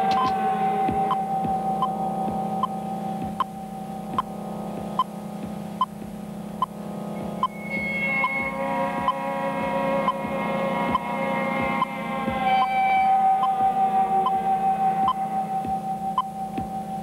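Electronic soundtrack of sustained synthesized tones, some gliding slowly in pitch, over a low hum, with a sharp click a little more often than once a second.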